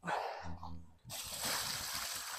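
Liquid pouring out of a five-gallon plastic bucket and splashing onto mulch and soil, a steady splashing hiss that starts a little over a second in.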